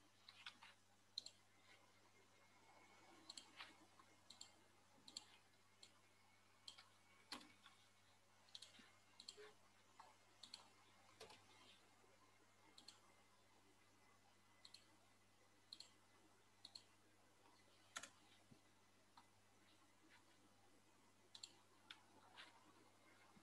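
Faint, irregular clicking at a computer, some clicks coming in quick pairs, over a faint steady low hum.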